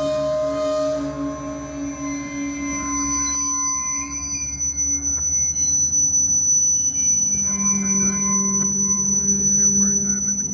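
Norfolk Southern diesel locomotives rolling slowly past, engines running, with steady high-pitched wheel squeal that grows louder about halfway through.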